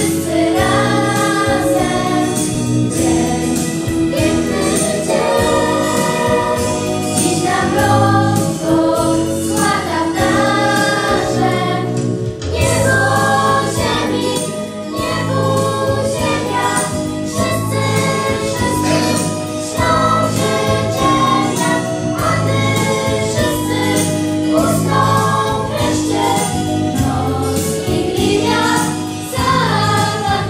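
A group of children singing a Christmas carol together, over a steady instrumental backing.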